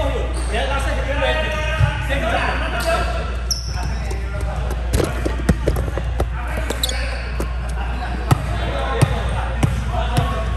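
Volleyballs knocking sharply and irregularly on the floor and against hands, echoing in a large gym hall, mostly in the second half. Players' voices talk over it in the first few seconds.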